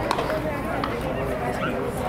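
A single sharp crack just after the start as a pitch reaches home plate, over steady voices of spectators in a small ballpark crowd.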